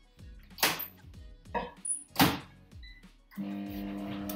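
Microwave oven being started: two sharp thuds, typical of its door being opened and shut, a short beep, then the microwave's steady hum starting near the end.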